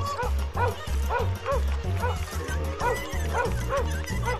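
A dog barking over and over, about two barks a second, over background music with a steady low beat.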